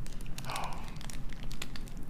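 Light scattered clicks and a brief rustle of fingers handling a small sterling silver box clasp.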